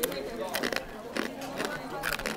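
Crisp crunching as a piece of baked yatsuhashi, a hard cinnamon cookie, is bitten and chewed, with several sharp crunches.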